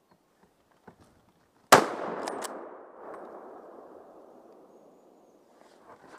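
A single scoped hunting rifle shot, with a long echo fading over about three seconds. Two short sharp clicks follow just after the shot.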